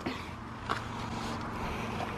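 A steady low mechanical hum in the background, with a faint click about two-thirds of a second in.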